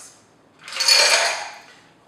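Ice cubes clattering into a glass of Negroni in one short burst, about half a second in, that fades away.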